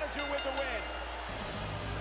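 A faint voice from the wrestling broadcast, then low music starting a little over halfway through, as the match ends.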